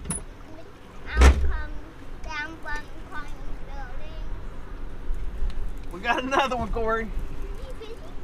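Indistinct voices, some wavering and high-pitched, with one sharp, loud thump about a second in, over a steady low rumble.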